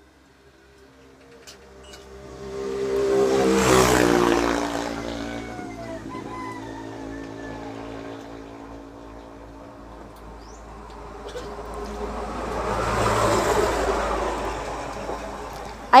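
Two motor vehicles passing along the road one after the other, each engine growing louder and then fading away: the first goes by about four seconds in, the second near the end.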